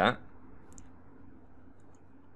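A few faint computer mouse clicks over a low steady hiss: one about three-quarters of a second in and two close together near the end.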